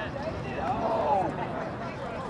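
Men's voices calling out across an outdoor soccer pitch, too far off to make out words. One loud, drawn-out shout comes near the middle.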